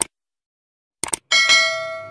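Subscribe-button animation sound effect: a short click, two quick clicks about a second in, then a bright bell ding that rings out and fades.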